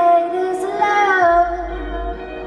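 Female lead vocalist singing long held notes live, with a falling slide in pitch just after a second in, over band accompaniment. A low bass note comes in partway through.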